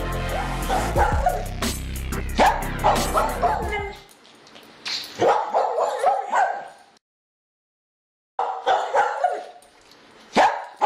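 Electronic music with a heavy bass line that cuts off about four seconds in. After it comes a dog barking repeatedly in two bursts, separated by a second or so of silence.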